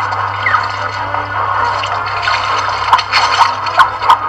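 Water splashing in a steaming hot tub, heard from a film soundtrack played through a screen's speaker, over a low steady hum. A few sharp knocks come near the end.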